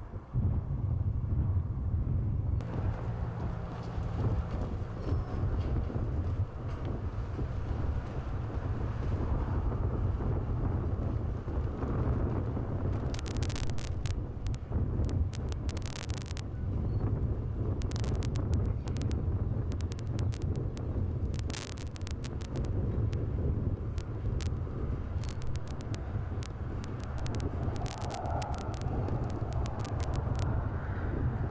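Wind buffeting the microphone with a steady, fluctuating low rumble. Sharp clicks and crackles come in scattered bursts through the middle.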